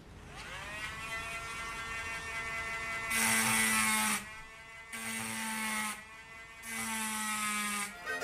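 Cordless Dremel Micro rotary tool switching on with a rising whine that settles into a steady high-speed run. Three times, for about a second each, its diamond wheel point bears on the wine glass and the sound turns louder and harsher as it grinds into the glass, retracing the etched outline.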